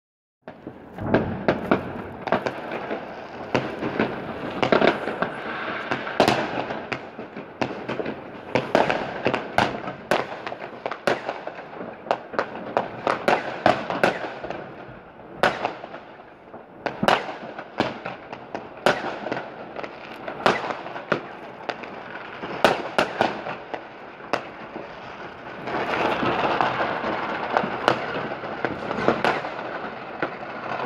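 Fireworks going off all around: a long string of sharp bangs from bursting rockets over steady crackling, and the crackling grows denser and louder near the end.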